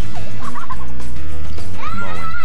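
A young boy's playful vocal trills: a short wavering one about half a second in, and a longer one near the end that rises in pitch and then wavers.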